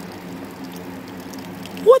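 A thin stream of tap water trickling and splashing onto the ground, a steady hiss with a faint low hum beneath it.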